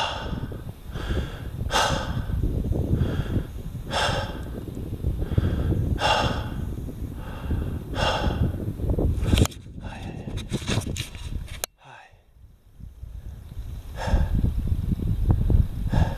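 A man breathing hard, about one loud breath a second, out of breath after a long, hard climb by mountain bike, with wind rumbling on the microphone. The breaths thin out near the end, with a few handling clicks and a brief moment of near quiet.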